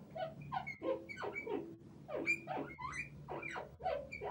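Felt-tip marker squeaking on a smooth writing board while a word is written: a quick run of short, high squeaks, several gliding up in pitch.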